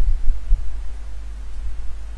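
A low, uneven rumble that pulses irregularly, with nothing clear above it.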